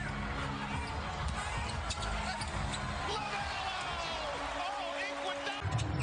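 Basketball dribbled repeatedly on a hardwood court, the bounces heard over the steady noise of an arena crowd. The sound changes abruptly near the end.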